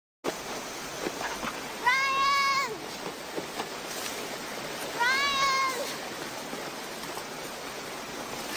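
Fast river rapids rushing steadily, with two long high-pitched calls, each under a second and falling at the end, about three seconds apart.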